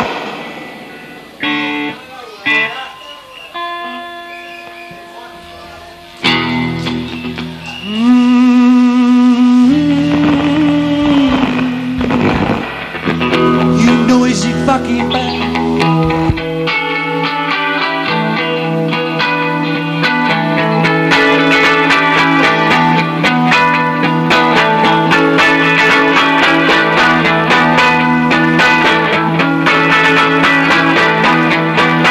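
Live rock band: electric guitar alone at first, a few picked notes, then louder held notes with vibrato. The full band with drums comes in about halfway, playing a steady beat.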